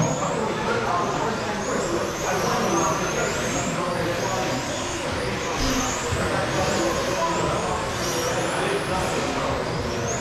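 Electric RC touring cars with 21.5-turn brushless motors racing on a carpet track, their high motor whine rising and falling again and again as they accelerate out of corners and brake into them.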